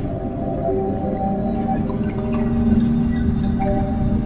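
Ambient music: a steady drone of several held tones over a low rumble, without a beat.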